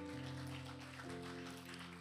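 Soft background music under the sermon: sustained held chords, changing to a new chord about a second in.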